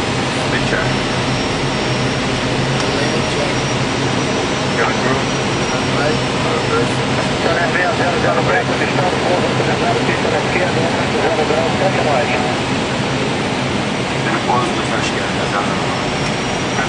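Steady, loud flight-deck noise of an Airbus A319 on final approach: rushing airflow with a constant low engine hum and a faint high whine. Faint voices come through in the middle.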